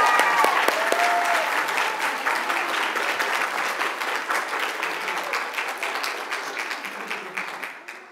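A congregation applauding, with a few voices whooping in the first second. The clapping gradually dies away toward the end.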